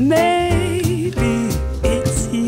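A song: a singer slides up into a held note with vibrato, over bass and drums.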